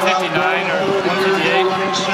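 Speech: a young man talking in an interview.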